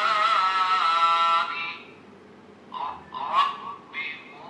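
The small built-in speaker of a Dany Ahsan-ul-Kalam smart Quran read-pen playing back recorded recitation of the Arabic word under the pen tip in word-to-word mode: one long melodic chanted syllable that ends about a second and a half in, then a few short voiced sounds near the end.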